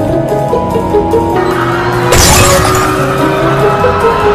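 Background music, then about two seconds in a sudden crash with shattering glass, a car-crash sound effect, trailing off as a long noisy wash under the music.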